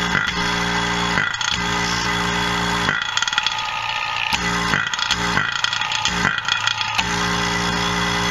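ZENY 3.5 CFM, quarter-horsepower single-stage rotary-vane vacuum pump running with a steady humming drone and a rattle over it. Its intake port is open, so it is pumping free air rather than pulling a vacuum.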